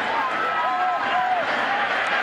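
Stadium crowd noise at a college football game: a steady din of many voices, with a few individual shouts rising above it.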